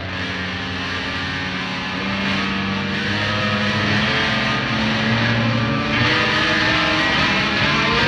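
Post-hardcore rock with distorted electric guitars holding sustained, droning chords. The music swells steadily louder.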